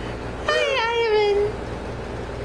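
A single high vocal call about a second long, starting with a quick wobble and then sliding down in pitch.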